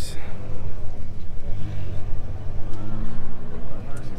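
A car engine idling steadily, with distant voices of people talking.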